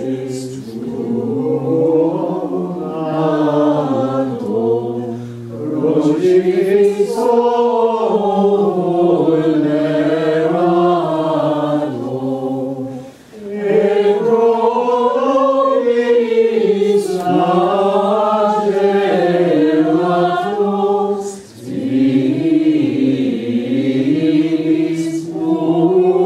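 Choir singing medieval Sarum plainchant in Latin in unison, one flowing melodic line in long phrases, with two brief breaks for breath, about halfway through and again near the end.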